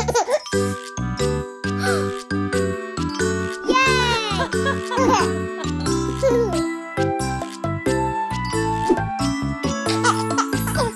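Gentle children's lullaby music in an instrumental break between sung verses: a tinkling, bell-like melody over soft held chords. A small child's voice sounds briefly about four seconds in.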